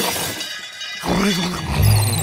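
Cartoon glass-shattering crash effect dying away, with glassy tinkling in the first second. Near the end a low pitched sound rises.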